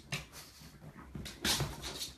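A pug making a few short, breathy sounds, the loudest about one and a half seconds in.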